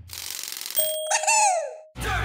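Cartoon sound effect as a thumbs-up score pops onto a scoreboard: a faint hiss, then a bright ding about a second in, with its tones sliding down in pitch before cutting off near the end.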